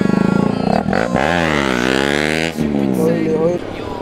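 Motorcycle engine running, its pitch dipping and then climbing again over about a second and a half as the bike pulls away, with rushing wind noise over it. A man speaks briefly near the end.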